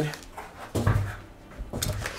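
Cardboard shipping box being handled: soft scuffs and a brief low sound about a second in, then a sharp tap near the end.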